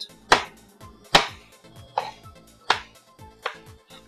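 Chef's knife chopping cooked Yukon Gold potatoes on a plastic cutting board: about five sharp knocks of the blade on the board, each under a second apart, with background music underneath.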